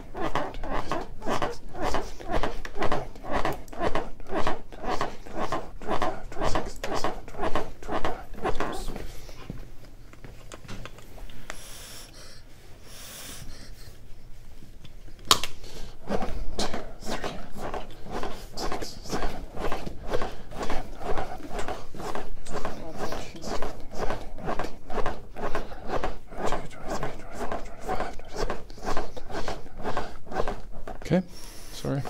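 Chest compressions on a CPR training manikin, a steady rhythm of about two pushes a second. The compressions stop for several seconds near the middle, a single sharp click sounds, and then the compressions resume at the same pace.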